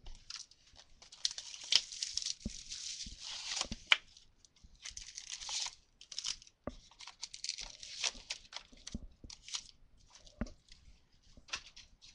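Plastic wrapping being torn and crinkled off a sealed box of trading cards, with cardboard and foil card packs handled as the box is opened and emptied. The crinkling runs in long stretches with sharp clicks and snaps between them.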